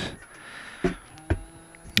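A few light knocks and clicks as a work lamp is repositioned by hand, one about a second in and another near the end.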